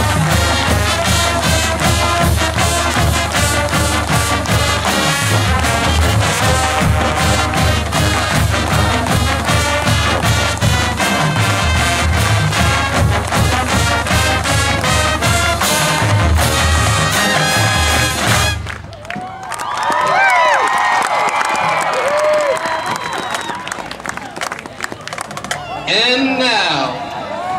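College marching band playing loud and full, brass over a steady drumline beat, with the music cutting off about eighteen seconds in. Then the crowd cheers and whistles.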